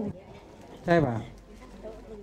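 Speech only: a short spoken question about a second in, with quiet background noise around it.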